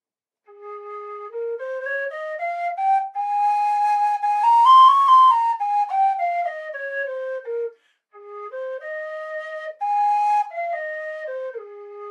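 Low whistle played in two stepwise scale runs. The first climbs note by note over more than an octave and comes back down. After a brief break, a shorter run rises and falls again.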